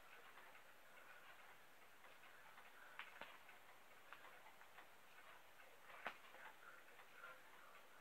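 Near silence with faint clicks and rustles of plastic binder sleeves as the pages of a card binder are turned. The sharpest clicks come about three seconds in and about six seconds in.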